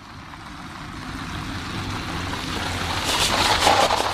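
A car approaching on a gravel road, its engine hum and tyre noise growing steadily louder.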